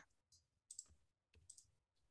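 Near silence, broken by a few faint clicks of a computer mouse in two quick pairs.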